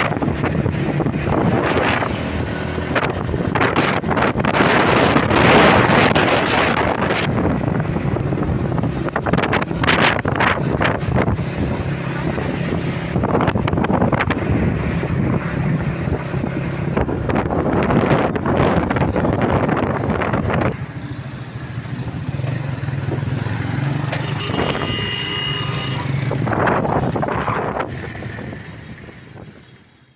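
Engine of the vehicle carrying the microphone running steadily with road noise, and gusts of wind buffet the microphone again and again. A brief high-pitched tone sounds about 25 seconds in, and the sound fades out at the end.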